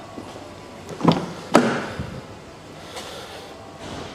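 Rear door of a 2006 Mercedes-Benz E280 being opened: two sharp clicks of the handle and latch about half a second apart, a little over a second in, then a lighter knock.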